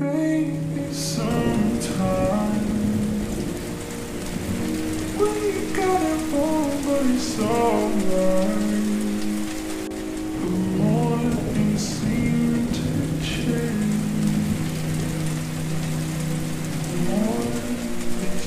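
Steady rain sound laid over a slowed-down song heavy with reverb: rain patters under a drawn-out melody of long held, gliding notes.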